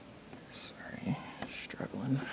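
Quiet whispered, muttered speech under the breath, with a few sharp clicks in the second half.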